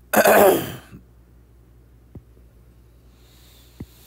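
A man clears his throat once, loudly, in the first second. Then only faint room noise with a couple of small clicks.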